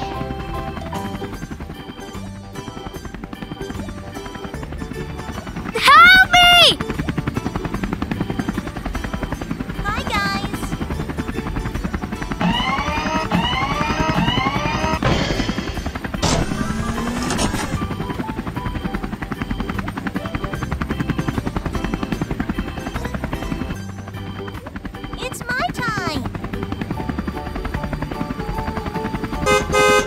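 Cartoon helicopter rotor sound effect, a fast steady chop, over background music. A few short gliding vocal-like sounds come and go, the loudest about six seconds in.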